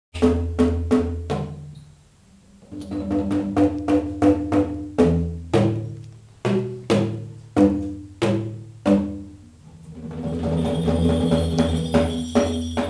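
Bamboo tube drums, bundles of tall bamboo tubes struck with paddle beaters, playing a melody of hollow, pitched notes that ring out and die away after each stroke, in a quicker run near the middle. Near the end a rattling roll swells underneath the strokes.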